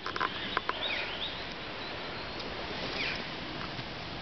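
A few faint, short downward chirps of a small bird over a steady background hiss, with a few sharp clicks in the first second.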